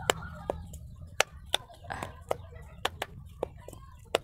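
Unicorn-shaped simple-dimple keychain fidget, its silicone bubbles pressed over and over: a dozen or so sharp clicks at irregular spacing.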